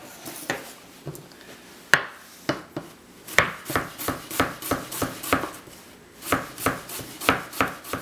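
Chef's knife slicing peeled ginger on a plastic cutting board, each cut a sharp knock of the blade on the board. A few separate cuts come first, then a steady run of about three cuts a second, broken by a brief pause and taken up again.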